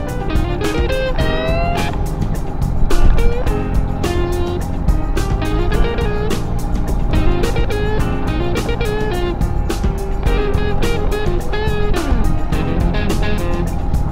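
Background music: an electric guitar melody with bending notes over a steady drum beat.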